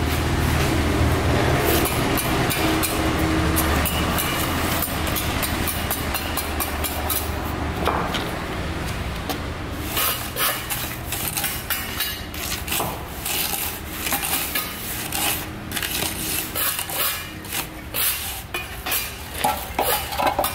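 A hand float scraping and rubbing over wet mortar in quick, repeated short strokes, starting about halfway through. Before that, a steady low hum runs underneath.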